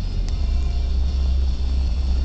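Steady low rumble of a car's engine and road noise heard from inside the cabin as the car rolls slowly, with one faint click about a third of a second in.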